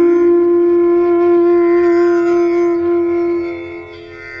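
Instrumental music: a wind instrument holds one long, steady note, which fades near the end.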